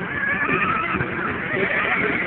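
Radio-controlled race cars running laps on a paved oval, a high whine that wavers up and down in pitch as they speed up and slow down through the turns.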